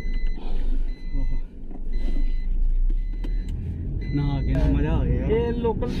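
Steady low rumble of a car driving, heard inside the cabin. A man starts talking over it about four seconds in.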